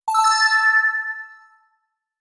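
Quiz 'correct answer' chime sound effect: a quick rising three-note ding that rings on with a slight waver and fades out within about a second and a half.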